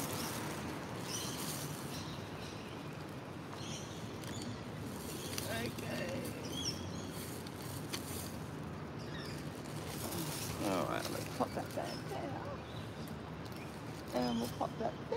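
Outdoor ambience with birds chirping at intervals over a low, even background. A short, faint voice comes in about three quarters of the way through.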